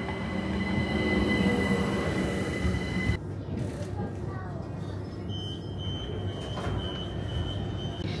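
A train in motion: a steady rumble with high-pitched steady whines over it. The sound shifts about three seconds in, and a single high whine comes in at about five seconds.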